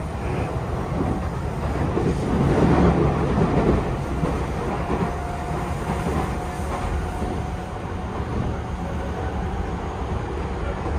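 Running noise heard inside a Tobu commuter electric train car at speed: a steady rumble of wheels on rails that swells about two to four seconds in, with a faint steady whine in the middle.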